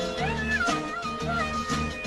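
Tamil film song music: a high melody line sliding up and down in pitch over steady bass notes.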